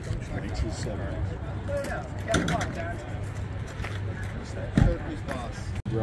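Indistinct background voices of people talking, over a steady low hum, with a single low thump near the end.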